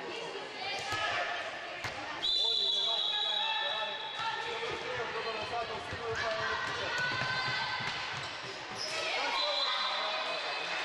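A handball bouncing and striking the floor of a sports hall amid high-pitched shouts from the young players. About two seconds in, a sudden loud, steady shrill tone holds for about two seconds, and a shorter one comes near the end.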